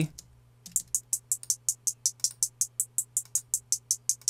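Programmed closed hi-hat loop, about six short, bright ticks a second, playing through Ableton's Frequency Shifter in Shift mode with its LFO pitching the hats up and down from hit to hit. It starts about half a second in.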